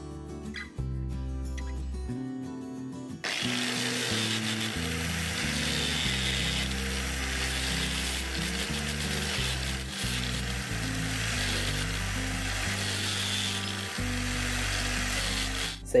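A handheld power tool grinding into coconut shell: a steady, hissy grinding that starts abruptly about three seconds in and runs until just before the end, with brief dips. Background music with a low melody plays throughout.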